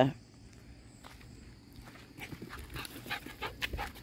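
A puppy panting in quick, short breaths close to the microphone, starting about two seconds in and growing louder toward the end.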